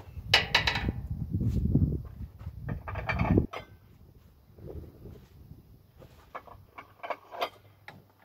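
Low rumbling and clattering for about the first three and a half seconds, then a scatter of sharp clinks and knocks as a small steel weight plate is handled, with a few louder clinks near the end.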